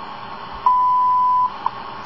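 WWV shortwave time signal heard through an Eton 550 radio's speaker: the 1000 Hz minute-marker tone, a little under a second long, sounds about two-thirds of a second in and is followed by a single seconds tick, over a steady bed of shortwave hiss.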